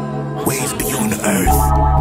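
Hip hop beat playing without rap vocals. The deep bass drops out and comes back in about one and a half seconds in, under sustained pitched layers.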